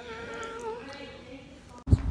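A woman's voice holding a long, high, slightly wavering excited note, with no words in it. Near the end it breaks off abruptly into a short low thump.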